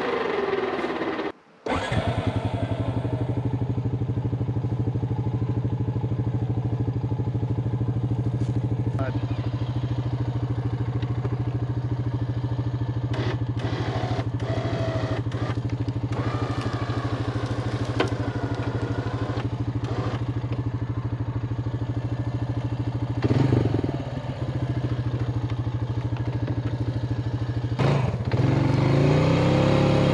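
Quad (ATV) engine idling steadily, with a few light clicks and knocks over it, then revving up near the end as the quad moves off.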